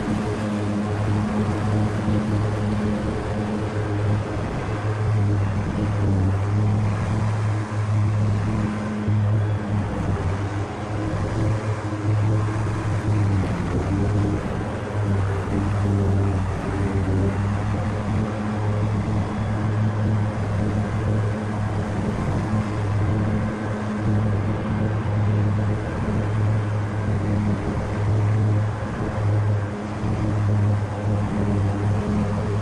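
Grasshopper 125V61 zero-turn riding mower running steadily under load while its deck cuts tall grass, a constant low engine tone over blade and wind noise.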